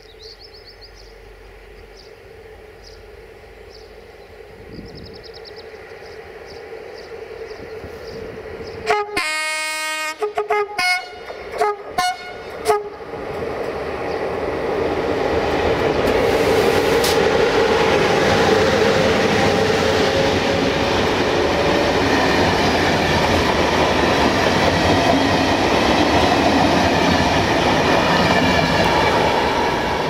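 A convoy of coupled Romanian locomotives, class 40 electrics among them, approaching and passing close by. About nine seconds in, a locomotive horn sounds one longer blast and then several short ones; after that the rumble and clatter of the wheels on the rails grows loud and holds as the locomotives roll past.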